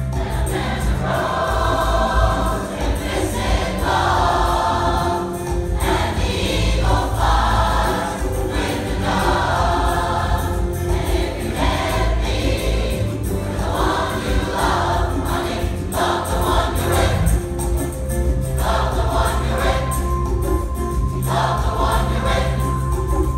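A large rock choir singing with instrumental backing, in repeated sung phrases of about two seconds with short breaks between them, over a steady bass line.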